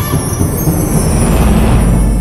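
Sound effect of a loud rushing whoosh over a deep rumble, with a faint high tone sliding downward; the rumble swells toward the end. It accompanies a goddess's appearance in a flash of light.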